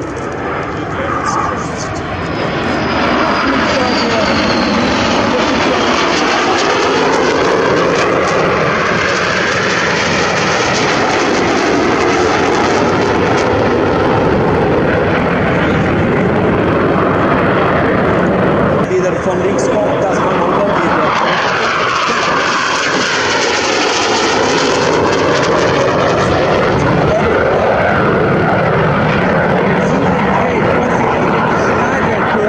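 Aermacchi MB-339 jet trainers' Viper turbojet engines: a loud, steady rushing jet roar that builds over the first few seconds and then holds. From about two-thirds of the way in, the tone wavers and sweeps down and back up as the jets pass overhead.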